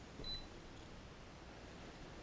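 A single short, high electronic key beep from a Lowrance fish finder as a button is pressed, about a quarter second in, then faint room tone.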